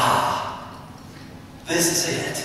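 A man's voice giving a long, breathy sigh that trails off over the first second, with another vocal sound starting near the end.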